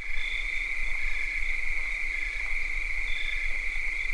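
Crickets trilling in a steady high chorus at night, with shorter calls above and below it coming and going every second or so.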